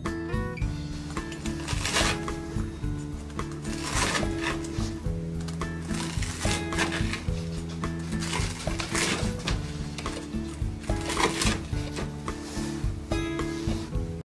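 Background music, with several crunching knife cuts through a crisp panko-crusted fried pork cutlet (tonkatsu) on a cutting board, roughly every two seconds.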